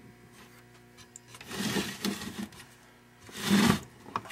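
Rustling and rubbing of hands handling flat ribbon cables and pushing a connector into the open unit's circuit board. There are two bursts of handling noise: a softer one about a second and a half in, and a louder, shorter one near the end.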